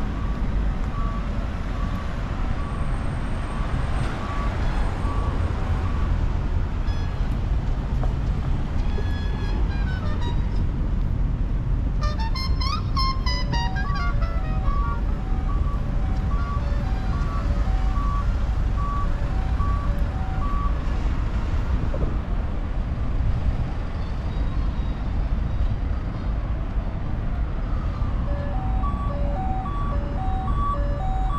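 Road traffic on a multi-lane urban road, a steady low rumble of passing cars. Over it a light melody of short, evenly spaced notes repeats, with a brief flurry of rising notes about twelve seconds in.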